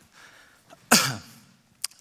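A man coughs once, a single sharp cough about a second in that dies away quickly, followed by a short click near the end.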